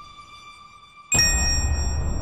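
Bell 'ding' sound effect: the ring of an earlier ding fades out, then about a second in a new ding strikes sharply and rings on, with low music starting beneath it.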